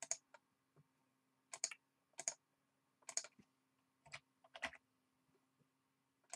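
Computer mouse clicks and keyboard keystrokes: about eight short clicks, some in quick pairs, spread over the first five seconds, over a faint steady hum.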